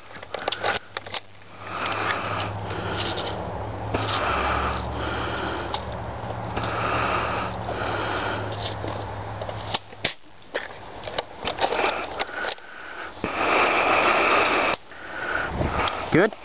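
A person breathing and sniffing close to the microphone, in a run of short puffs over a low steady hum. In the second half, clicks and rustling of movement take over, with a louder scratchy stretch near the end.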